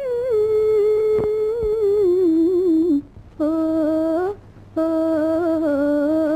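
A woman's high voice singing a slow wordless melody, long held notes with vibrato that step downward in pitch, broken twice by short pauses for breath midway.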